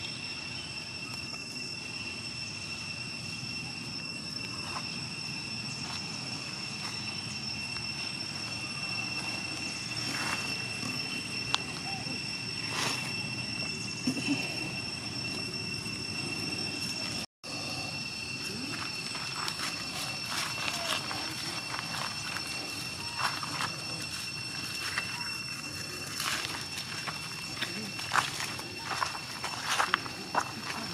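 Outdoor forest ambience: a steady, high two-pitched insect drone throughout, with scattered crackles and rustles of dry leaf litter that become more frequent in the second half. The sound cuts out for an instant just past halfway.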